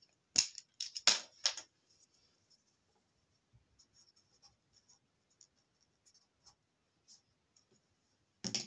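Four sharp clicks and taps in the first second and a half, then faint, scattered scratchy ticks: small handling noises of a marker pen on paper.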